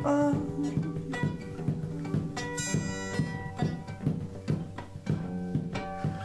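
Acoustic guitar playing an instrumental passage, with picked and strummed notes in a steady rhythm.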